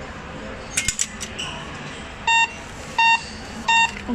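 Cash deposit machine: a few sharp clicks about a second in, then three short, loud electronic beeps about 0.7 s apart, the machine's prompt tone during a cash deposit.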